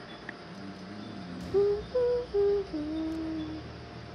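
A person humming a short four-note tune, stepping up and then down, with the last and lowest note held for about a second.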